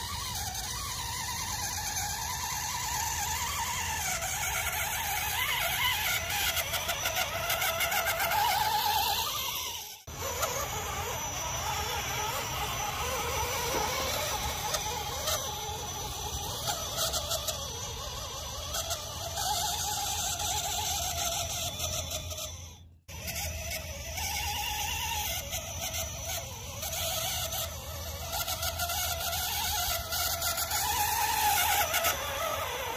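Electric motor and gearbox of a radio-controlled scale pickup truck whining, rising and falling in pitch with the throttle as it drives through mud and water. The sound cuts out briefly twice, about a third and three-quarters of the way through.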